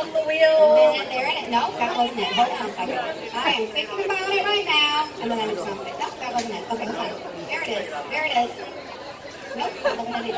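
Indistinct voices, several people talking at once.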